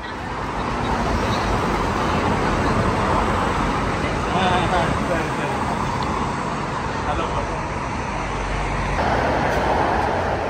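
Road traffic on a city street: a steady rush of passing cars, with faint voices in the background.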